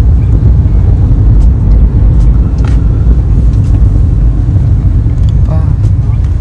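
Moving car cabin noise: a loud, steady low rumble of the car running on the road, with a few faint clicks.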